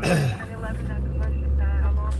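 Steady low rumble of a car driving, heard inside the cabin; it swells in about half a second in.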